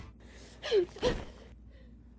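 A person gasping twice, about half a second apart, the first with a falling pitch.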